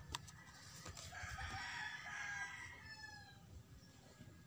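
Two sharp clicks right at the start, then one faint, long crowing bird call of about two seconds that falls in pitch at its end.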